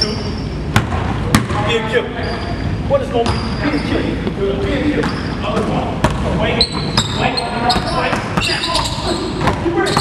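Basketball bouncing on a hardwood gym floor, a string of irregular sharp knocks, with people's voices underneath.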